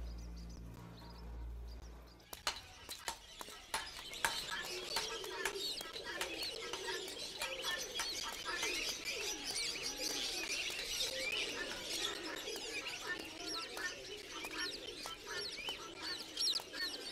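Street ambience of small birds chirping and pigeons cooing, with scattered sharp clicks and a faint murmur of voices. It comes in after about two seconds, as a low hum fades away.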